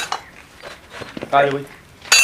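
Light clinks of metal hand tools knocking together on the ground: a sharp clink at the start and a few faint ticks after it. A man speaks a short phrase about a second and a half in.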